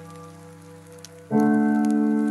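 Soft relaxing piano music: a held chord fades, then a new chord is struck about a second in, over faint scattered water drips.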